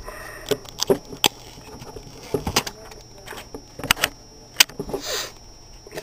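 A new smartphone being handled and its protective plastic pulled off: scattered sharp clicks and taps, with a short plastic rustle about five seconds in.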